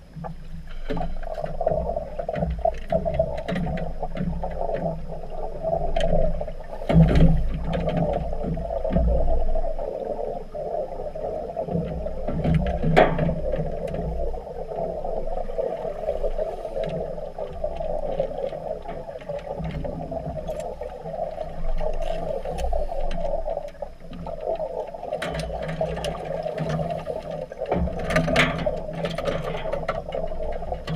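Muffled underwater noise picked up by a camera in a submerged housing in a swimming pool: scuba divers' exhaust bubbles, with a few sharp knocks and louder bursts of bubbling.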